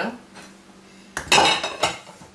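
Brief kitchen clatter, utensils and dishes clinking and knocking against the blender pitcher, lasting under a second about a second in.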